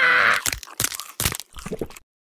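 Cartoon crunching and chomping sound effects for a snap-trap plant biting down on its prey: a loud crunch at the start, then a quick run of short crunchy bites.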